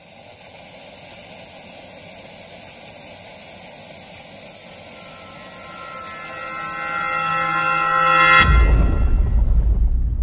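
Logo sting: a steady hiss of television static, with a swell of sustained tones that grows louder over the last few seconds. About eight and a half seconds in it breaks into a sudden deep boom that rings on.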